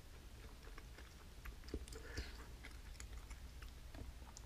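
Faint chewing and mouth sounds, with scattered small clicks.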